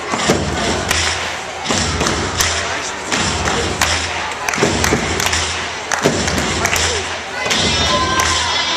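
Thuds of a gymnast's feet taking off and landing on a sprung floor-exercise floor, over floor-routine music with a pulsing bass and the chatter of onlookers echoing in a hall.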